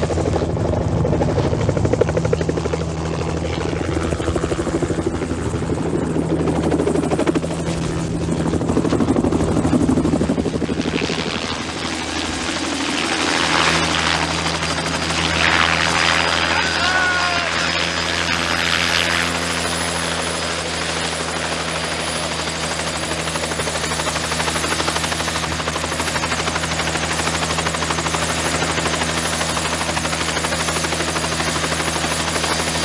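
Helicopter flying in low and setting down, its rotor beating steadily with the engine running throughout. A faint high whine drops a little in pitch about two-thirds of the way in.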